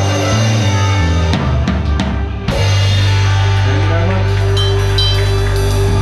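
A live band playing with a Mapex drum kit: a run of drum hits in the first half, then bass and chords held steady through the rest.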